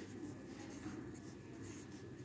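Faint scratching of a pencil writing letters on a printed textbook page, filling in a crossword.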